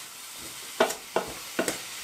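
Cauliflower rice frying in a stainless steel pan with a steady sizzle, stirred with a wooden spoon that knocks against the pan three times in the second half.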